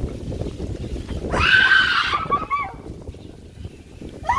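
A woman's loud, high-pitched cry, lasting under a second and starting about a second and a half in, after a low rumble of background noise; a few short voice sounds follow it.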